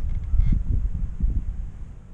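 Low, irregular wind rumble on the microphone that fades toward the end, with a few faint clicks.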